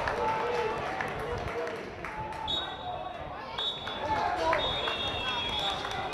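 Referee's whistle blown three times, two shorter blasts and a longer last one, signalling full time, over players' voices calling on the pitch.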